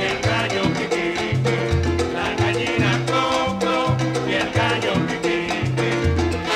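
Salsa band playing an instrumental passage between sung lines: a steady bass line under Latin percussion and the full band.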